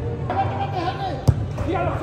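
One sharp thud of a soccer ball being struck, a little over a second in, over men's voices shouting.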